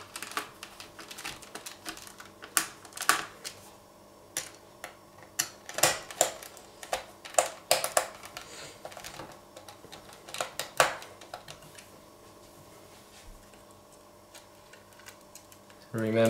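Small screwdriver fastening the screws of a laptop's metal hard-drive tray: irregular sharp clicks and taps of the tool against the screws and bracket, coming in clusters and growing sparse after about eleven seconds.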